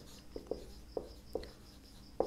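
Marker pen writing on a whiteboard: four faint short squeaks in the first second and a half as letters are drawn.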